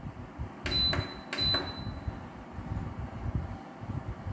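A NOMA infrared cabinet heater's control panel beeping twice as its timer button is pressed: two short, high beeps about two-thirds of a second apart, around a second in.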